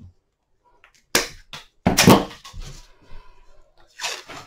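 Bypass secateurs cutting through a willow rod: a sharp crack about a second in, then a second, louder crack with a short clatter a second later, followed by a few light knocks.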